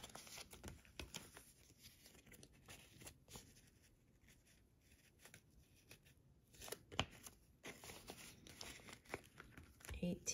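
Faint rustling and crinkling of paper banknotes being folded and slid into a paper cash envelope, with a few sharper paper crackles about seven seconds in.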